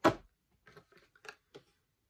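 A sharp knock at the very start, then faint light clicks and rustles of plastic Scentsy wax bar clamshells being handled as one bar is put aside and the next picked up.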